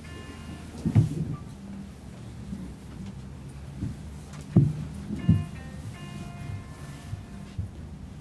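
Short steady pitched notes sounded for the choir as starting pitches, once at the start and again as a few notes in turn about five to seven seconds in. Several dull low thumps of handling noise are the loudest sounds, about a second in and twice near the five-second mark.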